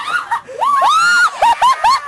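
High-pitched human voices shrieking and squealing: one long rising-and-falling squeal, then three short quick squeals near the end.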